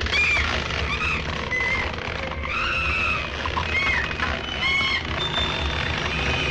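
Film soundtrack of a monster shrieking: a run of short, high-pitched arching squeals, one after another, over a steady low rumble.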